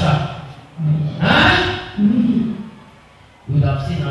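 A woman lets out a loud, breathy gasping cry into a close microphone, followed by a short low moan; a man's speech resumes near the end.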